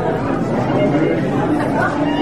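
Many people chattering in a large hall, with fiddle notes played faintly beneath the talk.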